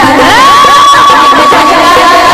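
Live Marathi devotional folk singing with a harmonium drone. Voices glide upward into one long high note, held for about a second, with cheering-like shouts around it.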